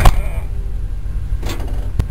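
Steady low rumble of the moving train, with a sharp knock at the very start and another about a second and a half in.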